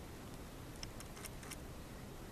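Quiet room tone with a few faint, short clicks about a second in.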